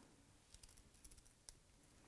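Faint snips of small scissors cutting the corners off a folded paper strip: a few quiet, brief clicks.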